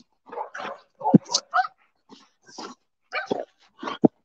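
Several excited dogs crowding close and making short dog sounds in irregular bursts, as they wait for treats.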